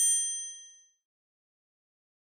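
A single bright, metallic chime-like ding that rings out and fades away within about a second.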